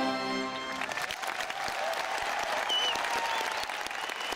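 A military brass band's final held chord stops under a second in, followed by a large crowd's applause.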